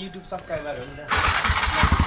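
A motorcycle engine starting up about a second in, suddenly loud, with a rapid low pulsing as it runs.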